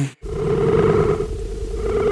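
Steady low rumble of city street traffic with a bus, cutting in abruptly after a brief moment of silence.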